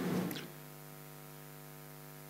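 A faint, steady electrical mains hum from the microphone and sound system, a low buzz with several even overtones, during a pause in speech.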